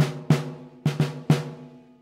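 Vintage Slingerland 16 by 16 inch marching field drum with a fiber head and gut snares, struck with sticks about five times in quick succession. Each hit rings on in a clear pitched tone that fades away near the end: pretty ringy, the drum having no muffling.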